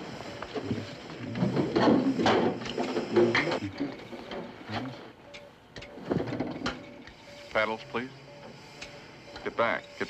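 Emergency-room commotion around a cardiac arrest: overlapping voices and clattering equipment, loudest in the first few seconds. Under it a cardiac monitor sounds short, evenly spaced beeps.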